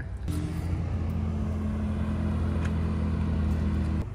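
A car engine idling close by, at a steady, even pitch throughout.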